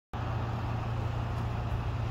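Steady low rumble of road traffic noise, unchanging throughout.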